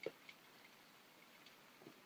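Near silence, with one brief soft knock right at the start and a few faint, scattered light ticks after it.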